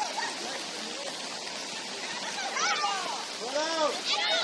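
Steady hiss of rain falling over an open sports field, with voices shouting a couple of times in the second half.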